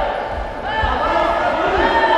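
Voices shouting over a Muay Thai bout, with three dull low thuds from the fighters in the ring.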